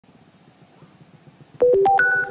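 Electronic intro jingle: near the end, a sudden quick run of clear synthesizer notes, one down then up, each note ringing on under the next.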